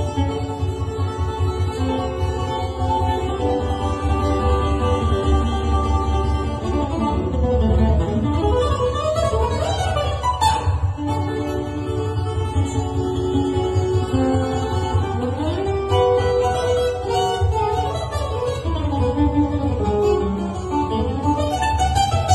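Puerto Rican cuatro playing a lively plucked lead melody, accompanied by bongos keeping a steady rhythm and a guitar.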